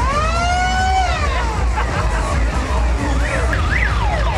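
A high, siren-like tone that slides up, holds and falls away over the first second and a half, then quicker up-and-down glides near the end, over a steady low rumble.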